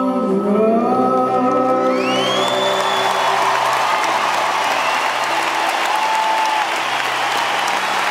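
The last held note of a live song, voices over piano and acoustic guitar, dies away about two seconds in. Then a large audience applauds and cheers, and someone gives a rising whistle.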